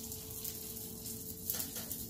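Sausage sizzling in a frying pan, a faint steady hiss.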